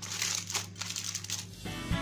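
Aluminium foil crinkling as it is folded and pressed by hand into a closed packet. Background music comes in near the end.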